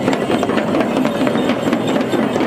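Several large double-headed frame drums (dhyangro) beaten together with curved sticks in a fast, steady beat.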